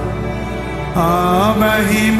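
Live Telugu worship song: band and keyboard accompaniment holding a sustained chord over a steady bass, then a male voice coming back in about a second in with a long, wavering held note.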